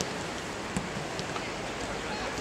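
Steady rain falling on a wet football pitch: an even hiss of rain, with a single sharp tick a little before the middle.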